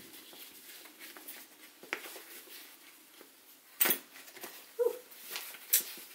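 Metal end fitting of a Ju-Ju-Be HoboBe bag's shoulder strap being handled and worked off the bag: quiet handling with a few sharp clicks, the loudest about four seconds in.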